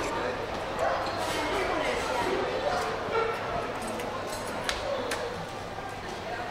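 Indistinct voices chattering in a large hall, with occasional sharp clinks of cutlery and crockery.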